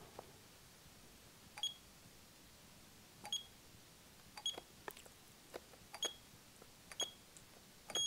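Icare handheld rebound tonometer taking six eye-pressure readings: six soft, short high beeps, one for each measurement, spaced about a second or so apart, with a few faint clicks between them.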